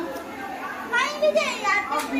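Background voices with children's voices among them, and a high-pitched voice calling out about a second in.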